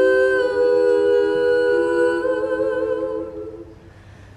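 A chord of humming voices held in harmony, shifting slightly about two seconds in and fading away near the end.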